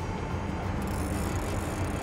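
Boat engine running steadily, with wind and water noise over it.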